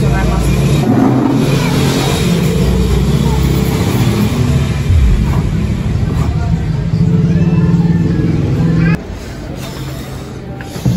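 A motor vehicle running close by, a loud steady low rumble that cuts off suddenly about nine seconds in.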